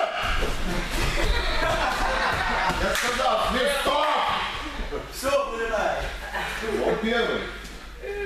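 Indistinct chatter of several voices in a large, echoing gym hall, with a sharp knock or slap about three seconds in.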